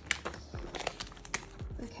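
Plastic pocket pages crinkling and clicking as they are flipped by hand in a large ring binder, a quick run of small crackles.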